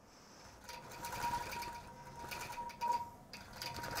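Long arm quilting machine stitching on its own under computer guidance, a quiet fast run of needle strokes with a thin steady tone over it.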